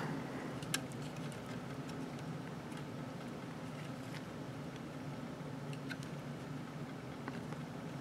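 Faint, occasional clicks and taps of a transforming robot figure's plastic parts as they are folded, swivelled and tabbed into place by hand, over a steady low hum.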